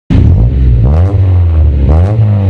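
Honda Civic exhaust through a KRO freeflow muffler, the engine running with a deep steady drone and revved briefly twice, about a second in and again near the end.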